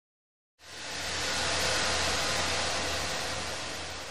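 A steady burst of static-like hiss with a low hum beneath it, swelling in out of dead silence about half a second in and starting to fade near the end.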